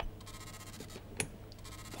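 Quiet room tone with a low steady hum, broken by a single short, sharp click about a second in.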